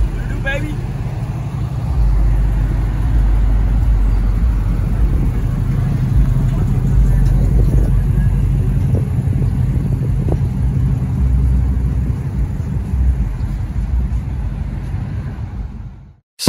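Car engine idling, a steady low hum, with brief voices in the background; the sound cuts off just before the end.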